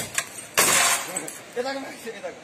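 A rod smashing a truck's windshield glass: a strike right at the start and a louder crash about half a second in, with the glass crunching and fading after it. A voice shouts briefly near the end.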